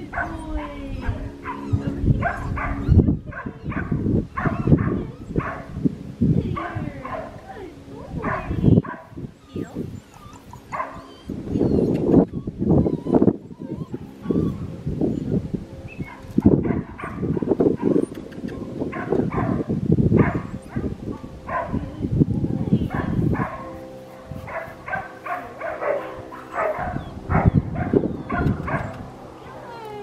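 Six-week-old Australian Shepherd puppy yipping and whimpering in short, repeated calls. A steady low hum sits underneath at the start and again in the last several seconds.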